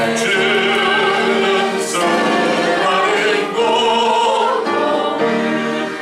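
A hymn being sung in Korean, a man's voice through the pulpit microphones with other voices, in long held notes with vibrato that change about once a second.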